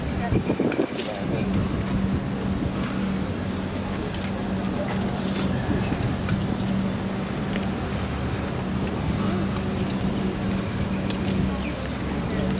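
V/Line P-class diesel locomotive's engine running with a steady low hum as it creeps closer, with steam hissing from the standing steam locomotive R707.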